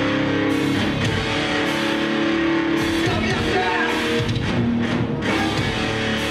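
A heavy rock band playing live: loud distorted electric guitar chords held over a drum kit.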